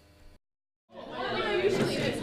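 A brief moment of dead silence, then about a second in a classroom of teenagers breaks into chatter, many voices talking over one another.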